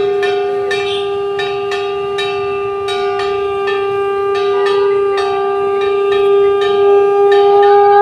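A conch shell (shankha) blown in one long, unbroken, steady note. A quick, even beat of sharp strikes, about three a second, runs behind it.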